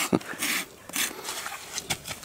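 Hoof rasp scraping across a horse's hoof in a few short strokes.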